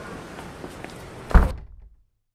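A panelled wooden door being worked by its knob, with a few light clicks, then shutting with one loud thud about a second and a half in.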